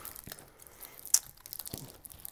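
Wiring harness being handled: soft rustling of its braided loom with small clicks from the plastic connectors, and one sharper click about a second in.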